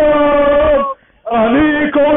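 A man's voice singing in long, held notes that bend gently in pitch. The sound drops out abruptly for a fraction of a second about a second in, then the singing resumes.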